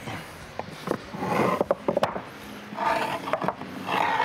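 Flat stone slabs being handled on a stack: scraping and a quick run of sharp clinks and knocks about halfway through as pieces are lifted and set down against one another.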